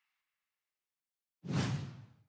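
Silence, then about a second and a half in, a sudden whoosh sound effect that fades away over about half a second, as the closing logo animation leaves the screen.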